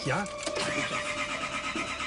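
A car engine being started about half a second in, the starter cranking with a rapid, even pulse.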